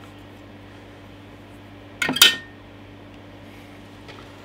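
A brief metallic clatter about halfway through, small metal parts such as screws striking a hard surface, over a steady low electrical hum.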